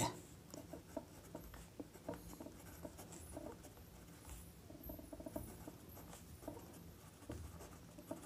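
Pen writing on paper: faint, irregular scratching strokes.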